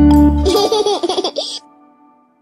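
A song's closing note breaks off, and a cartoon baby laughs for about a second. A faint held tone then fades away.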